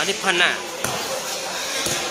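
Two sharp thumps of a volleyball about a second apart, after a man's voice at the start.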